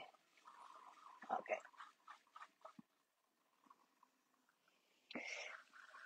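Faint, irregular wet squishing of clay under the hands as it is centered on a potter's wheel, with a short breathy sound near the end.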